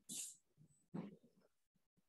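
Near silence, broken by two brief faint noises: a short hiss at the very start and a shorter sound about a second in.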